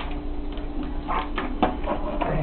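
A few short, sharp cracks and clicks of crab shell as hands pull a crab apart over a stainless steel sink, one at the start and a quick cluster of three a little past the middle.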